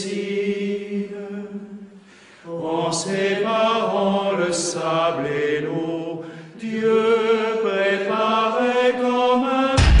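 Cistercian monks' choir chanting a liturgical hymn in long, held sung phrases, with a short break about two seconds in.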